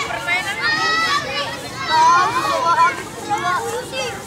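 A group of children's voices shouting and calling out over one another as they play, high-pitched, with the loudest calls about two seconds in.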